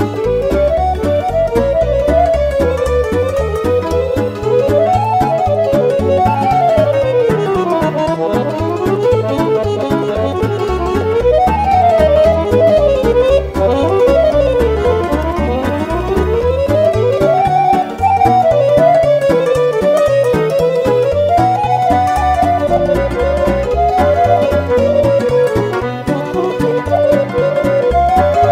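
Weltmeister Cantora piano accordion playing a fast Romanian hora joc melody in E major, in quick runs that sweep up and down, over a backing orchestration with a steady pulsing beat in the bass.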